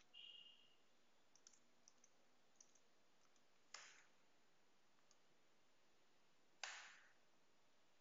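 Near silence broken by a few faint clicks of a computer mouse, with two sharper clicks about four and seven seconds in.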